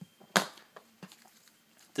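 Handling noise from a stylus and its plastic blister pack: one sharp tap or clack about a third of a second in, with a few fainter clicks around it.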